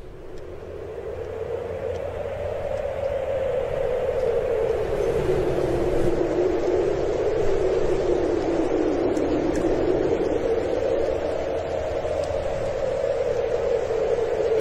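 Wind blowing in a storm: a steady rushing noise with a low howl that slowly rises and falls in pitch, fading in over the first couple of seconds.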